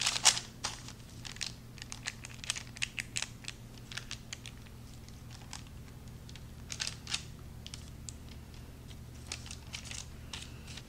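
A metal spoon scraping and tapping through thick brownie batter in a parchment-lined metal baking pan, with the parchment paper crinkling: irregular light clicks and scrapes, a few louder ones at the start and about seven seconds in.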